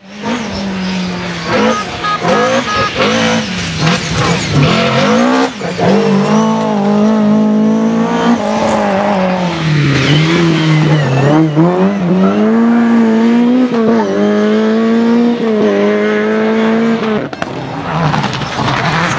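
Rally cars' engines revving hard as they run past one after another. The engine note climbs and drops again and again through gear changes and lifts, with short breaks and cracks between gears.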